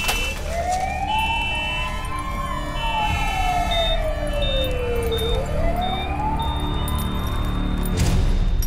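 An emergency-vehicle siren wailing slowly, its pitch rising and falling in one long sweep and then starting to rise again, heard in the aftermath of a car crash. From about halfway a high beep repeats roughly every two-thirds of a second, then becomes one steady tone near the end.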